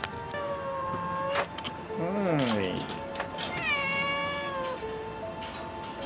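Domestic cat meowing twice: a short rising-and-falling meow about two seconds in, then a longer meow that falls in pitch, over background music.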